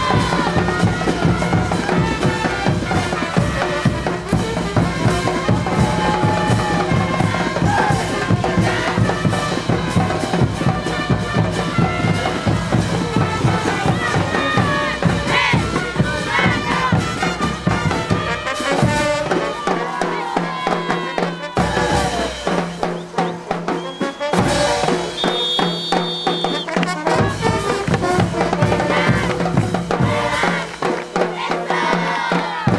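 Caporales dance music played by brass and drums with a steady beat. The low drums drop out for a few seconds past the middle, then come back.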